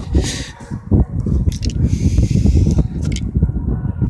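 Aerosol can of orange spray paint hissing in short bursts, with a few light clicks, over a low wind rumble on the microphone.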